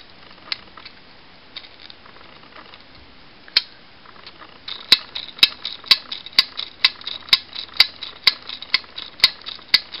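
Plastic joints of a Transformers toy's removable roof-rack stretcher clicking as it is worked by hand: a few scattered clicks at first, then from about five seconds in a steady run of sharp clicks, about two a second.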